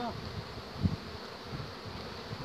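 Honey bees buzzing around an open hive as its frames are worked, with one short thump a little under a second in.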